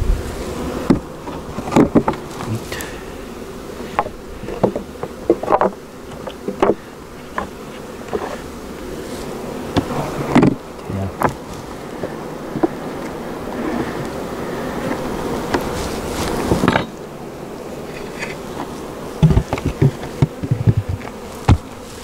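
A honeybee colony buzzing steadily at an open wooden hive, with scattered sharp wooden knocks and clunks as the hive boxes, frames and cover are handled and the hive is closed, the knocks coming thickest near the end.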